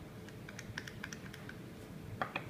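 Small copper parts of a 26650 mod being handled in gloved hands: a quick run of about ten light clicks that ends about halfway through.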